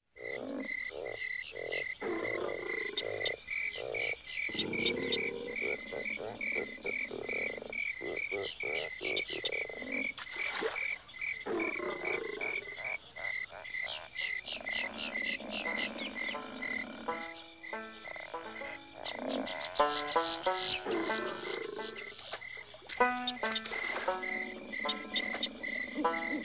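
Bayou soundscape of the Pirates of the Caribbean ride: frogs croaking irregularly over a high chirp that repeats about three to four times a second.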